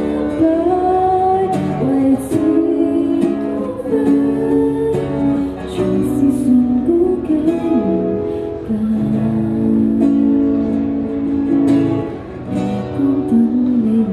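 An acoustic guitar strummed as accompaniment while a woman sings a slow pop song into an amplified microphone.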